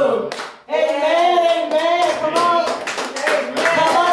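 Women's voices singing a gospel praise song through microphones, with hands clapping along; the held note fades out about half a second in and the singing picks up again after a brief gap.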